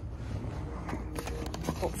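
A quick run of small knocks and clatters as something falls, followed by a short laugh near the end.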